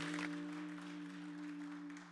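Audience applause dying out about a quarter second in, while an electric keyboard holds a sustained chord of several steady notes that slowly fades.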